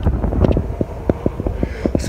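Wind buffeting the phone's microphone, a heavy low rumble broken by irregular knocks and rubs as the phone is handled and turned round.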